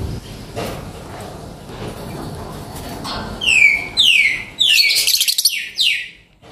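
Fischer's lovebird calling: from about halfway in, a quick run of loud, shrill chirps, each falling in pitch, which breaks off at the end.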